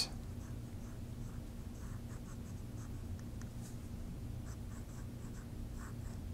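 Namiki Falcon fountain pen with a soft fine nib writing cursive on Rhodia dot-grid paper: faint, short scratching strokes of the nib across the page.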